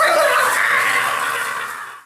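Kitchen faucet water running into a sink as a steady rush, fading out toward the end.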